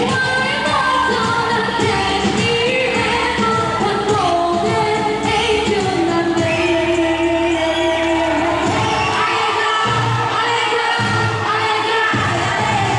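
Loud live pop music with a singer, the melody held in long notes over a full backing, played through a concert PA system.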